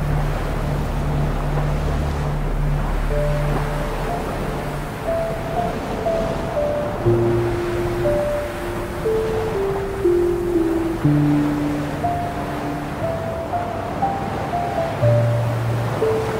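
Slow 396 Hz ambient music: low held drone notes under a slow melody of sustained single tones that begins a few seconds in, laid over a steady wash of ocean surf.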